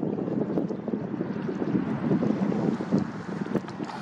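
Wind buffeting the microphone: a steady, uneven low rumble with no clear call or engine note in it.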